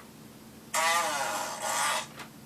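Large newspaper rustling and crackling as it is shaken and refolded, in two loud pushes lasting just over a second. A lower pitched sound that slides slightly downward runs under the first push.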